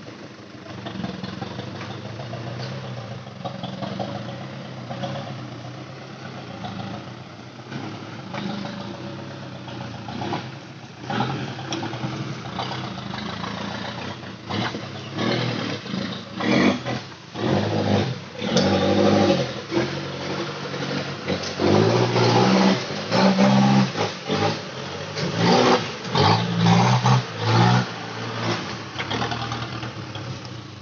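Loaded light dump truck's engine running steadily at first, then revving in repeated surges as it labours through deep mud and ruts. It grows louder as it comes near, with the strongest bursts in the second half.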